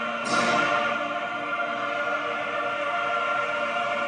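A large choir singing, holding long sustained chords, with a fresh, louder entry about a quarter of a second in; it is the soundtrack of a film of a uniformed choir projected in a museum exhibit.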